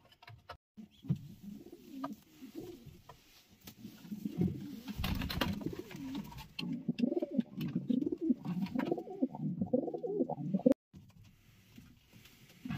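Racing pigeons cooing over and over in a small wooden loft box, with a burst of wing flapping about five seconds in. The sound cuts off suddenly near the end.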